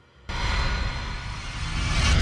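A loud electric guitar jam with a heavy low end starts abruptly about a quarter-second in, chaotic and aggressive.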